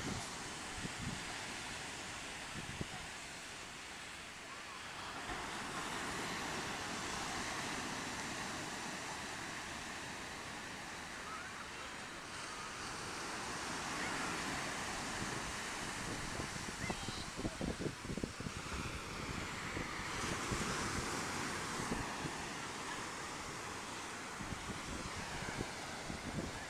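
Atlantic Ocean surf breaking on a sandy beach: a steady wash that swells and eases every several seconds as waves come in. Wind buffets the microphone now and then.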